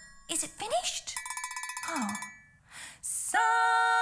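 A metal triangle rolled rapidly for about a second, ringing, among short vocal exclamations. Near the end a woman starts singing a long held note.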